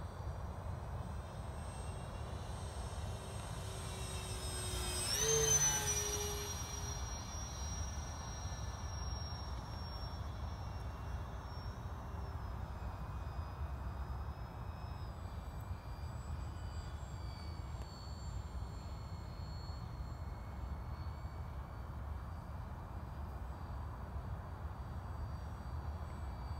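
Radio-controlled OV-10 Bronco model airplane flying overhead with a thin, high motor whine. It passes closest about five seconds in, where it swells and its pitch drops, then it carries on as a steadier, fainter whine.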